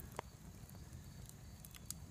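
Wood fire burning quietly, with a few faint crackles and pops.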